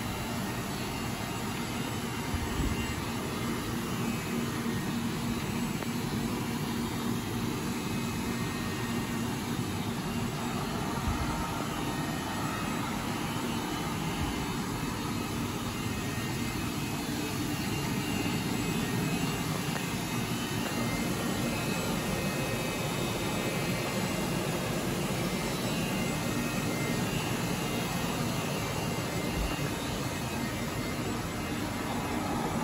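Deckel FP 5 CC CNC universal milling and drilling machine running behind its closed guard: a steady, even machine noise with faint steady tones and no distinct cutting strikes.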